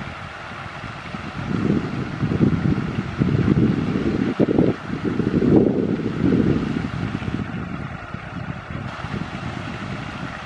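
Wind buffeting the camera's microphone: a low, gusty rushing that swells and fades in waves, strongest around the middle.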